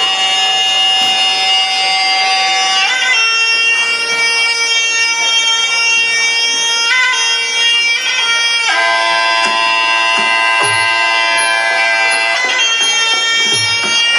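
Thai Sarama ring music: a reedy pi java oboe holds long notes over a steady drone, changing pitch every few seconds, with a few low drum beats in the second half.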